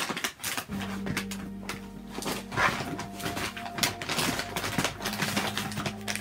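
Rummaging sounds: short rustles and clicks of items being handled and pulled out of a bag. Under them, soft background music with steady held notes comes in about a second in.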